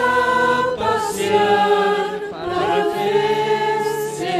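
A mixed group of men and women singing together without words, holding long notes that shift pitch a few times.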